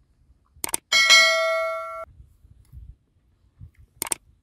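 Subscribe-button sound effect: a click, then a bright notification-bell ding that rings for about a second and cuts off suddenly. A second click comes at the end.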